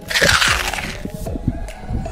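A loud burst of crackling, rushing noise lasting about a second, over background music.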